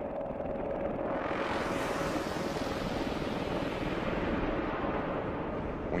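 Bell Boeing V-22 Osprey tiltrotor flying in helicopter mode, its two proprotors and turboshaft engines giving a steady, loud drone. A whine fades out in the first second, and a brighter rushing noise swells about two seconds in.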